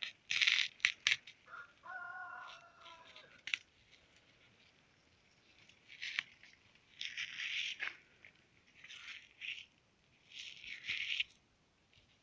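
Dry basil seed heads crackling and rustling as they are stripped from the stalk and crumbled between the fingers, in several short bursts.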